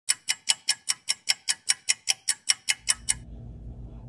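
Fast, even ticking, about five sharp ticks a second, that stops about three seconds in; a low steady hum takes over near the end.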